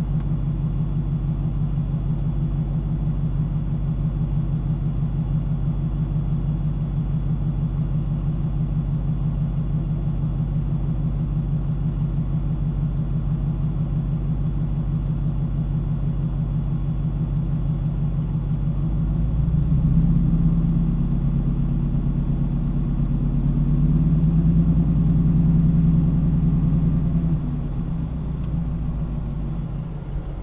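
Supercharged Ford Lightning V8 idling steadily, heard from inside the cab. About two-thirds of the way through it grows louder for roughly eight seconds, then settles back near the end.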